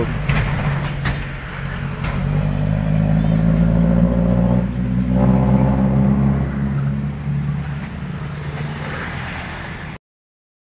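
A small motor vehicle engine, likely a motorcycle, running steadily; it swells toward the middle and fades toward the end.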